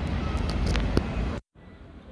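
Outdoor background noise, mostly a low rumble, picked up by a camera's built-in mic, with a few sharp clicks as the earphone plug goes into the jack. About three-quarters of the way through the sound cuts out abruptly and returns quieter and duller as the recording switches to the earphones' mic.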